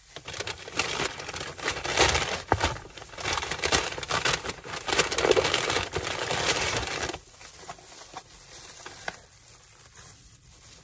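Thin disposable plastic gloves crinkling and rustling as they are pulled on and worked over the hands, busiest for about the first seven seconds. Fainter rustling of paper food wrapping follows near the end.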